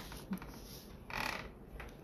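Faint handling noise from a phone on a flexible gooseneck holder being bent into position, with a brief rustle about a second in.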